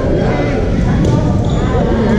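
Babble of many voices talking over one another, echoing in a large sports hall, over a steady low rumble.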